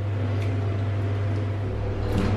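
Steady low hum inside a lift car.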